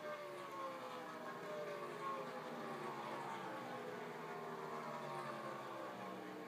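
Race truck V8 engine heard through a television speaker, its engine note falling steadily over the first few seconds as the truck slows, then running on at a steadier pitch.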